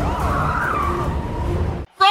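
Police car siren wailing in quick rising-and-falling yelps over engine rumble, giving way to tyre squeal as a car chase goes on. All the sound cuts off suddenly just before the end.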